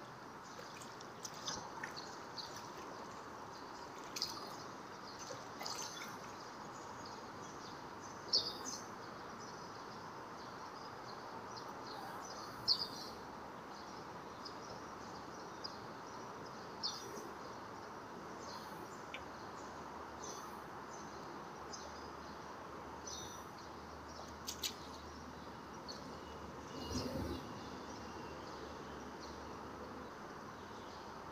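Small birds chirping in short, scattered calls over a steady background hum of outdoor noise. Near the end there is one brief low rustle or knock.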